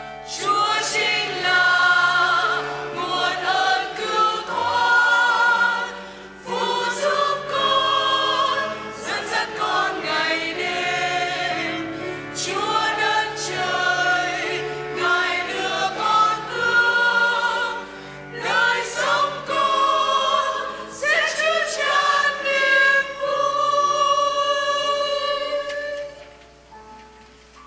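Church choir singing a hymn in long sung phrases with short breaks between them, over a low sustained accompaniment. The singing stops near the end.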